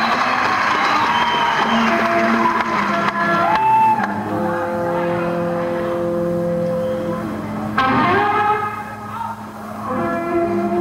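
Electric guitar playing slow, sustained notes with string bends, mostly on its own without a full band beat.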